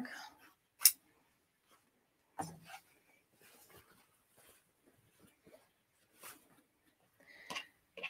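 Quiet handling sounds broken by a few short sharp clicks: a scissor snip about a second in, then scissors and a fabric piece being set down and handled on the pressing mat.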